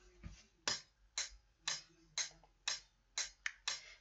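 Metronome ticking steadily, about two clicks a second.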